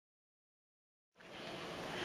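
Dead silence for about the first second, then a steady, faint outdoor street noise fades in.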